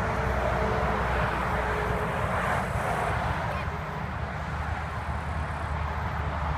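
Steady road noise of highway traffic going by, with a continuous low rumble underneath.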